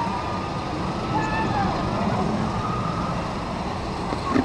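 Outdoor theme-park background noise: a steady rumbling din with faint distant voices.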